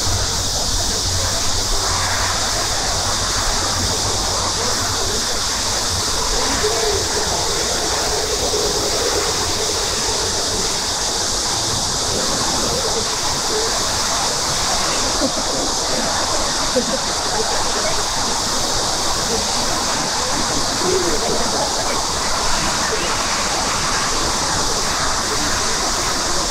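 A steady, even outdoor hiss, strongest high up and unchanging throughout, with faint, low murmured speech over it.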